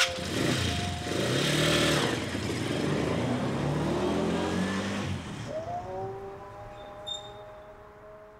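SKYGO motorized cargo tricycle pulling away: its small engine revs up and the sound fades as it moves off, about five seconds in. A sustained music cue comes in over the fading engine.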